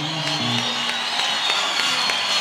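A salsa band playing live, with a steady percussion pulse and a held high note, over crowd cheering and applause.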